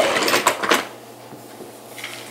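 Plastic pet carrier rattling and clattering as its wire door is handled, mostly in the first second.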